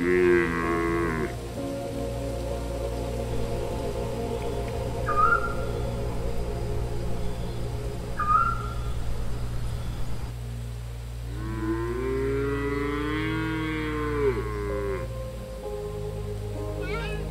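Cattle mooing: a short call right at the start and one long, wavering moo from about 11 to 15 seconds in, with two brief high chirps in between. Steady background music runs underneath.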